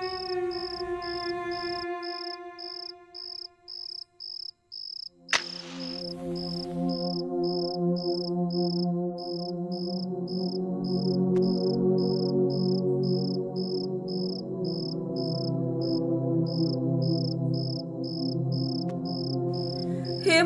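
Crickets chirping steadily at about two chirps a second, under soft background music of held drone notes. The first held chord fades out over the first few seconds. About five seconds in, a match is struck with a sudden rasp, and a new, lower drone swells in.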